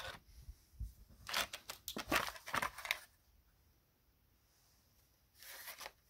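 Paper and card model being handled by hand: a scatter of short rustles and light taps during the first half, with a faint rustle again near the end.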